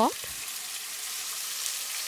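Onion paste frying in hot ghee, a steady high sizzling hiss.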